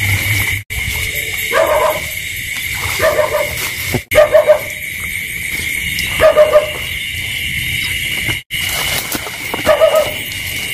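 Night insects trilling in a steady high-pitched chorus over a rice paddy, with several short runs of loud, barking-like animal calls.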